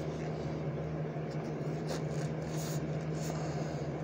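Steady low hum with even background noise, typical of a fan or similar appliance running in a small room, with a few faint rustles.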